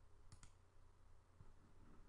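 A computer mouse button clicking: a quick pair of faint clicks about a third of a second in, then near silence.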